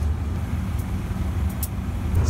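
A GE diesel-electric locomotive idling with a steady, deep engine rumble.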